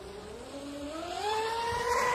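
Twin brushless electric motors of a Minicat 820 EP RC catamaran speedboat whining at high revs, the pitch rising and the sound growing louder as the boat speeds up across the water.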